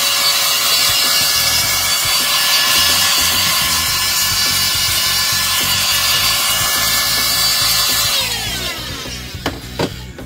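Handheld electric air blower running with a steady whine over a rush of air, blowing metal shavings off a guitar neck. It is switched off a little after eight seconds in, and its whine falls in pitch as the fan spins down.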